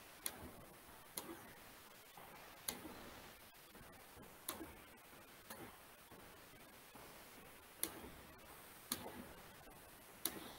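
Faint, sharp single clicks of a computer mouse, about eight of them at uneven intervals of one to two seconds.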